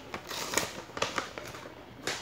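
Paper rustling and crinkling by hand, with a few light clicks, as a sheet of paper is handled and a trading card is drawn out from it.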